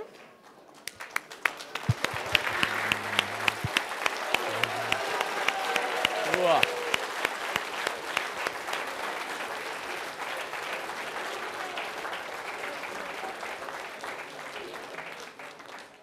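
Audience applauding, starting about a second in, swelling, then slowly dying down, with a voice briefly heard in the middle.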